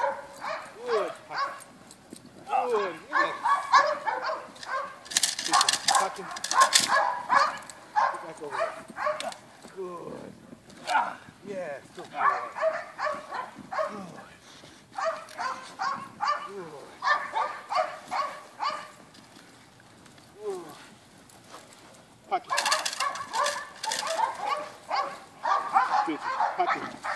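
A dog barking and growling in repeated bursts of several seconds with short pauses between, while being agitated by a decoy in a bite suit during protection training.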